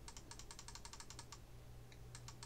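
Faint, rapid tapping on computer keys, about ten clicks a second, scrolling down through a program. It stops about a second and a half in.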